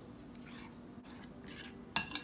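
Metal spoon stirring grated peaches and sugar in a ceramic bowl: faint soft scraping, then one sharp ringing clink near the end.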